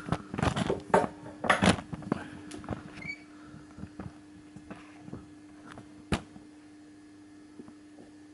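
Handling noise: a few knocks and clatters in the first two seconds, then scattered faint clicks and one sharp tap about six seconds in, over a steady low electrical hum.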